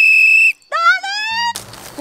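Small plastic whistle blown once: a single shrill, steady blast about half a second long at the start.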